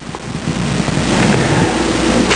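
Steady hiss of background recording noise, growing louder through a pause in the speech.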